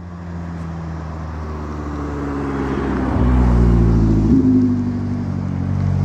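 A motor vehicle's engine running steadily, growing louder to a peak about halfway through and then easing off slightly.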